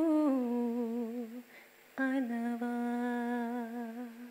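A woman's solo voice singing without accompaniment, wordless and hum-like: a held note with a wavering vibrato that fades out about a second and a half in, then after a brief pause a second long, steady note. These are the closing phrases of a Telugu film song.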